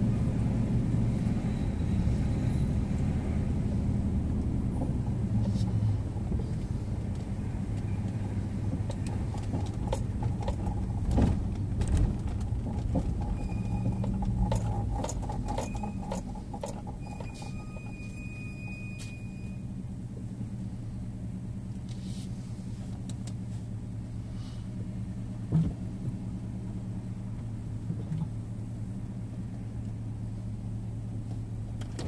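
Steady low rumble of car engine and road noise heard from inside a moving car. It grows quieter in the second half as the car slows in queued traffic, and a few light clicks fall around the middle.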